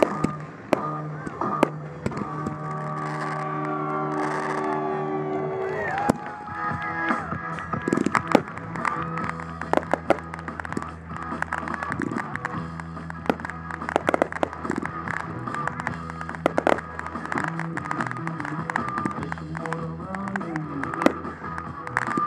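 Aerial fireworks shells bursting with sharp bangs and crackle, the bangs coming thick and fast after the first few seconds, over loud music played with the show.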